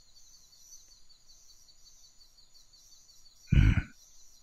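A faint, steady, high-pitched chirring background, then near the end one short, deep vocal sound from a man.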